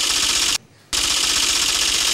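Transition sound effect: a bright, rapid rattle in two bursts, a short one cut off about half a second in, then a longer one that stops abruptly.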